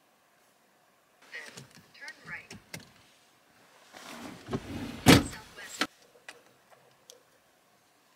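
Rustling, clicks and knocks from a person shifting in a car seat and handling a phone, starting about a second in. The loudest is a sharp knock about five seconds in, followed by a few lighter clicks.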